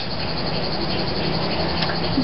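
A steady mechanical drone: an even noise with a low, unchanging hum underneath, holding one level throughout.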